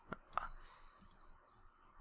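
Faint computer mouse clicks: two sharp clicks in the first half second.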